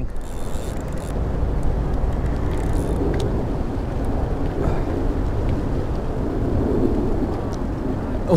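Wind buffeting the camera microphone: a steady, loud rumbling noise with no break.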